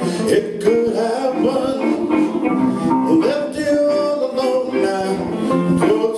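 Live blues band playing with electric guitars, bass guitar and a drum kit keeping a steady beat.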